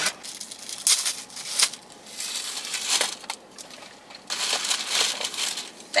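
Paper takeout sandwich wrapper crinkling and rustling as it is handled and unwrapped, in irregular bursts with a few sharper crackles.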